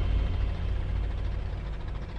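Boat engine running with a steady low rumble, easing off slightly toward the end.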